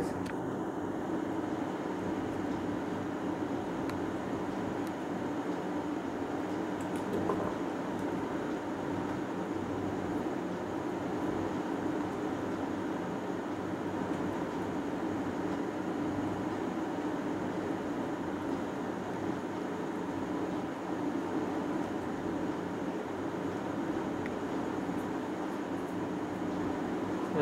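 Steady, unchanging background hum with a hiss, with no distinct events.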